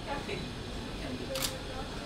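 A single short, sharp click about one and a half seconds in, over faint talk in the room.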